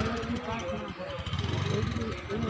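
Background chatter of several voices over a motorcycle engine running at low speed as the bike is ridden slowly through a test course.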